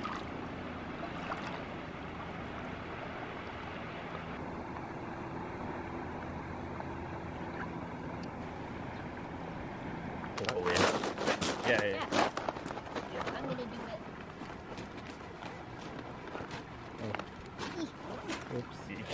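The Bow River running steadily over a shallow cobble shore. About ten seconds in, a couple of seconds of irregular crunching and clatter from footsteps on the river cobbles, with fainter steps after.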